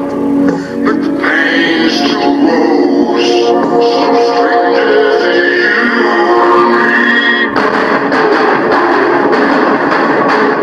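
A song with vocals playing loudly on a car audio system with subwoofers. About seven and a half seconds in it switches abruptly to a different, guitar-led passage.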